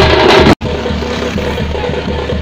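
A group of stick-beaten drums playing a fast, dense rhythm close up. The sound cuts out for an instant about half a second in, then the drumming carries on noticeably quieter.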